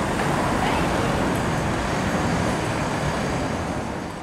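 City street traffic noise: a steady rush of cars and vans driving past on a wide avenue.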